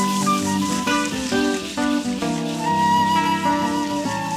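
Live band playing an instrumental passage between sung lines: a sustained melodic lead moving through a few held notes over guitar and percussion.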